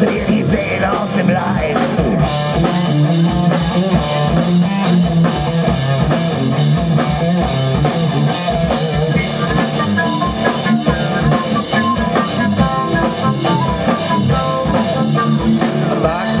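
A rock band playing live: electric guitar and drum kit in a steady, driving rhythm, with a higher melodic line coming in over it in the second half.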